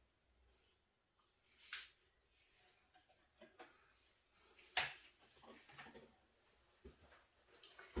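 Near silence: room tone with a few faint taps and knocks of things being handled, the sharpest nearly five seconds in.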